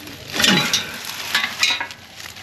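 Old metal engine parts clanking and scraping as a cooling fan bolted to a water pump is dragged out of a parts pile, with dry leaves rustling under them. A couple of louder clanks with a short metallic ring stand out, about half a second in and again near the end.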